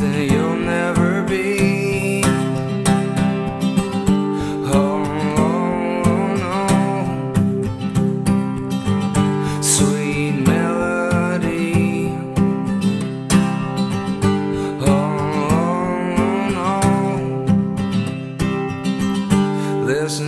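Steel-string acoustic guitar strummed in a steady rhythm, with a man's voice singing a wordless, wavering melody over the chords.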